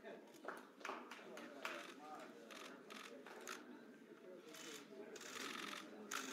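Faint murmur of voices in a room, with scattered short clicks and a rise of hissy noise near the end.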